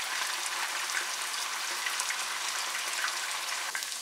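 Tuna chunks frying in a thin layer of hot olive oil over high heat: a steady sizzle with fine crackling pops.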